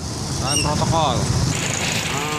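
Street traffic: a heavy coal-haulage truck's engine rumbling as it passes close by, loudest in the middle, with tyre and road hiss growing toward the end. People are talking nearby.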